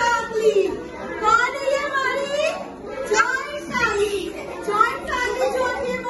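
Several young children chattering and calling out, their high voices running on without a break.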